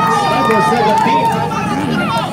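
Dirt bike engines running and revving, mixed with people's voices.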